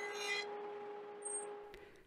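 Table saw with a stacked dado blade running: a short burst of cutting noise right at the start, then a steady motor hum that fades away near the end.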